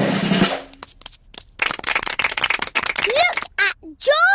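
Snare drum roll of dense, rapid strikes, with a voice rising in pitch near the end.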